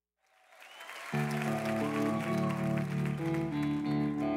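Audience applause swelling up out of silence, then a live pop band comes in about a second in and plays on steadily with sustained chords.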